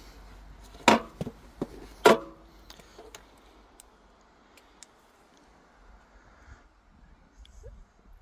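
Two sharp knocks about a second apart, then a few faint clicks, as a rider settles onto an electric bike and presses the buttons on its handlebar control pod.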